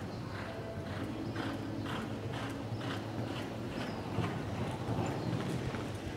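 Hoofbeats of a reining horse loping on soft arena dirt: dull thuds in a quick, even rhythm, about three a second.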